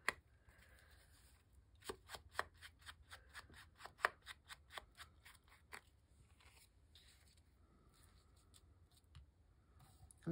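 Faint clicks, taps and paper rustles of small paper pieces and a craft tool being handled on a tabletop, with a scatter of quick clicks in the middle and one sharp click about four seconds in.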